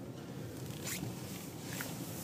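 Steady low hum of a car cabin while driving slowly, with two brief swishing rustles, one about a second in and a fainter one near the end.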